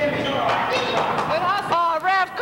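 A basketball being dribbled on a gym floor, its bounces ringing in a large hall, while voices call out on and around the court, with a loud pitched shout near the end.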